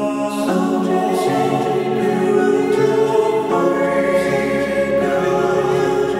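Music: a layered choir singing long held chords, the harmony shifting several times.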